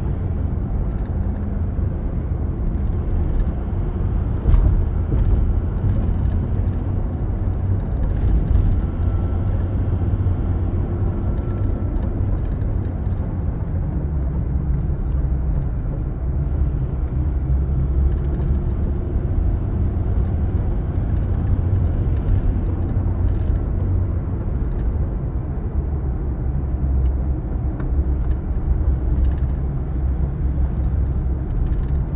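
Car cabin noise while driving: a steady low rumble of engine and tyres on the road, with a few faint clicks and rattles.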